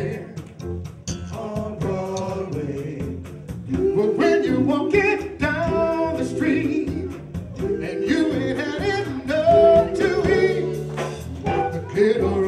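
Male vocal group singing live in harmony, in the style of a 1950s R&B group, backed by keyboard and a drum kit with a steady cymbal beat.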